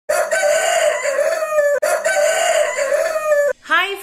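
A rooster crowing cock-a-doodle-doo twice in a row, each crow long and drawn out at about a second and a half.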